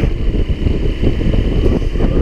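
Wind buffeting the microphone of a moving motorcycle, over a steady low rumble of engine and road noise.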